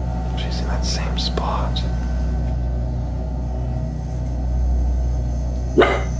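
Steady low electrical hum throughout, which the owner hopes is just the fridge running, with a faint whisper about a second in and one short sharp bark-like sound near the end.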